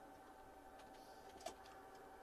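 Near silence: room tone with a faint steady whine, and a single short click about one and a half seconds in.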